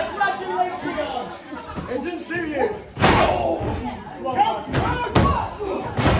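Two heavy thuds of bodies hitting the wrestling ring's canvas and boards, about three seconds in and again about two seconds later, the first the louder, amid shouts and chatter from the crowd and the wrestlers.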